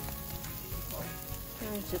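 Ribeye and New York strip steaks sizzling steadily on the hot grate of a Weber gas grill.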